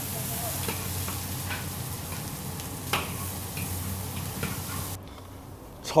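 Chopped rooster pieces sizzling in hot peanut oil in a large iron wok, being stir-fried dry to render the fat out of the skin, with a few light scrapes of the metal ladle against the pan. The sizzle cuts off suddenly about five seconds in.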